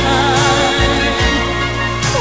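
A sung pop ballad: a voice held with vibrato over sustained accompaniment and bass.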